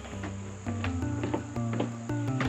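Background music of short plucked notes changing about every quarter second over a moving bass line, with a steady high buzz like crickets behind it.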